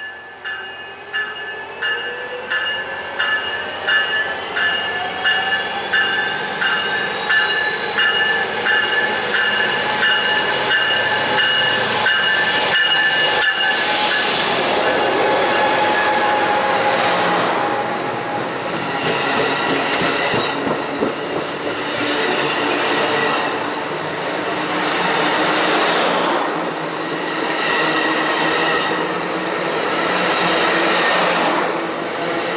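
Amtrak Pacific Surfliner train coming into the station, a bell ringing about twice a second over a slowly rising whine. The ringing stops about fourteen seconds in, and the bi-level passenger cars roll past with steady wheel-on-rail rumble and clatter.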